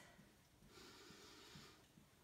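Near silence, with a faint breath out that starts about half a second in and lasts about a second.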